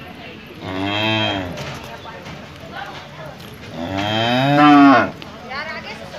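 A cow mooing twice: a call of about a second, then a longer, louder one about four seconds in, each rising and falling in pitch.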